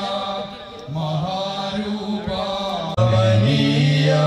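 Devotional chanting over sustained, droning tones. It dips briefly near the start, then gets markedly louder about three seconds in.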